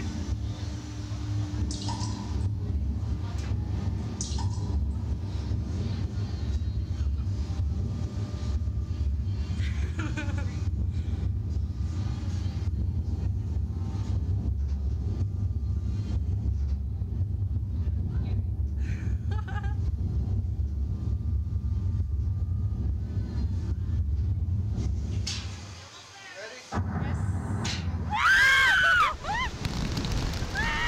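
A steady low rumble that drops out briefly near the end. Then two riders give loud shrieks that rise and fall as the reverse-bungee slingshot ride launches them into the air.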